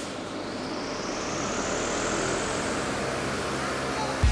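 A large wind-machine fan running with a steady rushing whir, its pitch rising slowly as it speeds up.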